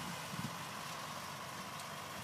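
Farm tractor pulling a mechanical tomato transplanter across a field, its engine a faint, steady running sound at a distance.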